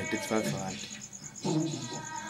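A man's voice speaking in short phrases, with a pause in the middle. Behind it, a steady, rapid high-pitched chirping pulses evenly throughout.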